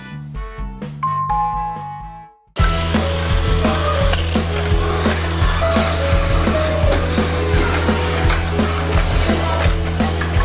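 Background music, then after a brief cut-out, a Tamiya Mini 4WD car running on a plastic multi-lane circuit. Its little electric motor hums and its wheels and rollers clatter along the track sections with regular clacks, with music faintly behind.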